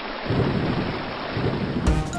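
Storm sound effect: steady rain with low rolling thunder, building up about a third of a second in, with music starting just at the end.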